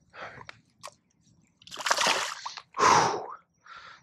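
A bass released back into shallow pond water, splashing twice about two seconds in, the second splash following the first within a second.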